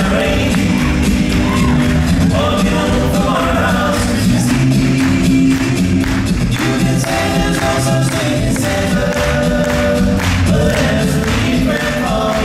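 A cappella vocal group singing sustained chords over a sung bass line, with beatboxed percussion keeping time, amplified through a PA.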